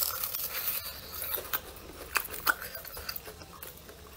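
Biting into and chewing a deep-fried brown-sugar glutinous rice cake close to the microphone, its crisp fried crust crunching in a run of many small sharp crackles.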